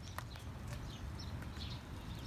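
Faint outdoor ambience: a low rumble like wind on the microphone, with a few faint ticks and short high chirps.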